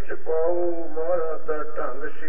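A man's voice in a sung, chant-like delivery with long held notes, sounding muffled and narrow as if from an old or low-quality recording.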